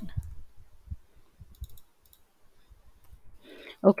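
Faint clicking at a computer, in two short clusters around the middle.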